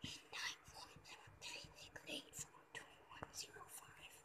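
Felt-tip marker writing digits on a whiteboard: a string of short, quiet scratchy strokes, one about every half second, with soft whispering over them.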